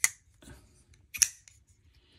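Titanium folding knife's action worked by hand: two sharp metallic clicks, one at the start and a louder one about a second later, as the M390 blade swings open and closed against its detent and lock.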